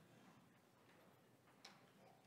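Near silence: room tone with a few faint small clicks, the sharpest about one and a half seconds in.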